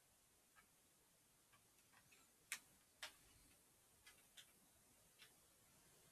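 Near silence with a handful of faint, irregularly spaced clicks, the loudest two about halfway through.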